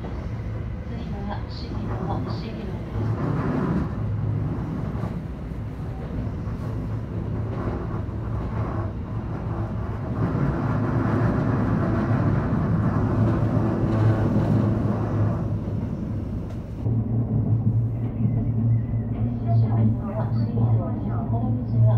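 JR West electric commuter train running, heard from just behind the driver's cab: wheels on rail under a steady low hum. It grows louder around the middle and again near the end.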